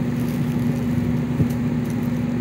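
A steady low motor hum holding one constant pitch, with a single short knock about one and a half seconds in.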